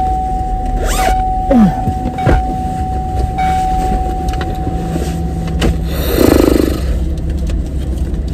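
Steady low hum inside a car cabin, with clothing rustling as a jacket is pulled off. A thin steady tone runs through the first five and a half seconds, and a short buzzy sound comes about six seconds in.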